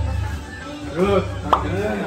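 One sharp knock of a utensil on a kitchen counter about one and a half seconds in, with voices and a low hum underneath.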